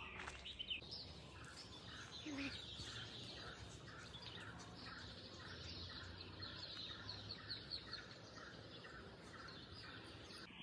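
Faint bird calls: one short chirping note repeats about three times a second, with higher chirps over it, against a quiet background hum.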